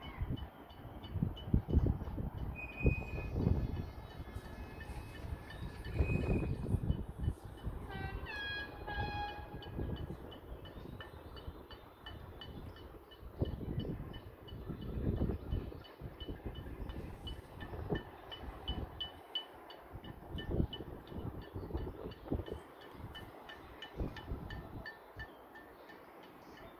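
Many people clapping from windows and balconies across a housing estate, heard from high up, with a few horn honks around eight to nine seconds in and a bell ringing repeatedly through the second half.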